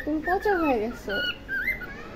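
Pet cockatiel warbling and whistling: a falling, chattering warble in the first second, then several short, thin whistled notes.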